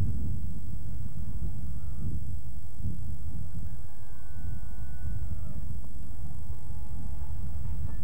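Wind rumbling on the camcorder's microphone outdoors: a steady, loud, low rumble, with a faint thin high tone held for about a second and a half near the middle.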